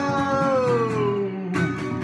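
Rock cover with guitar: a man's long sung note slides down in pitch over held guitar chords and ends about a second and a half in, where a fresh guitar strum comes in.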